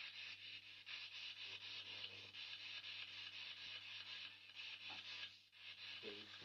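Spirit box sweeping through radio static: a steady hiss chopped by a fast, even flutter, over a low electrical hum.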